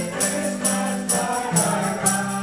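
Mixed choir singing a gospel song in unison to strummed acoustic guitar, with a tambourine hit on every beat, about two strokes a second.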